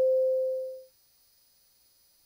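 A single pure, mid-pitched tone sets off with a click, is loud at first and fades away within the first second. Faint steady hiss follows.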